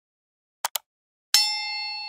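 Subscribe-button animation sound effect: two quick clicks, then a bright bell ding about a second and a third in that rings on and slowly fades.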